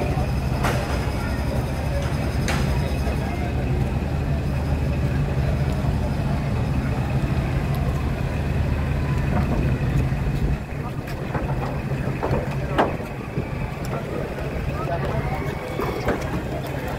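Busy street sound with people's voices over a steady low engine hum, which drops away about ten and a half seconds in; a few sharp knocks stand out.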